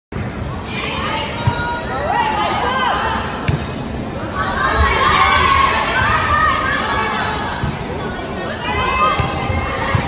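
Volleyball rally: several sharp slaps of hands and forearms striking the ball, a few seconds apart, over players calling out and spectators shouting.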